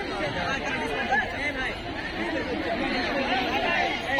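A crowd of schoolchildren chattering, many voices talking at once with no single voice standing out.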